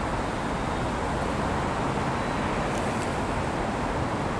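Steady road-traffic noise from a city street, an even rumble with no distinct events.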